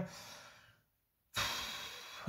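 A man sighing, a breathy exhale that starts suddenly about halfway through after a brief dead silence and fades away.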